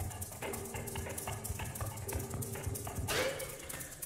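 Live percussion: rapid, dense tapping and clicking strokes over faint held tones, with a louder rushing sound about three seconds in.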